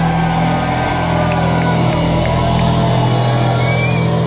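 Live rock band playing amplified electric guitars, bass and drums, heard from the audience, with steady notes held and ringing.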